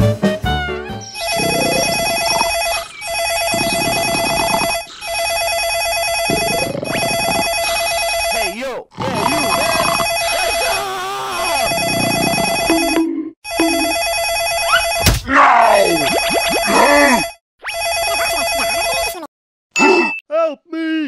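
A ringing sound effect like a telephone bell or alarm, in repeated bursts of just under two seconds with short breaks, about nine in all. Lower voice-like sound effects and a few sliding tones run underneath, most plainly in the second half.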